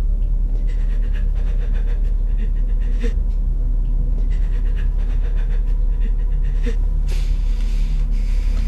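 A woman panting heavily in bouts of breath, frightened and injured, over a steady low drone.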